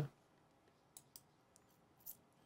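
Near silence: room tone, with two faint short clicks about a second in, a sixth of a second apart.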